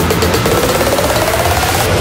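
Melbourne bounce electronic dance track in a build-up: a fast, dense drum roll under a synth tone that rises steadily in pitch.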